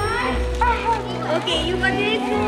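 Several children's voices chattering and calling out over background music with held tones and a low bass.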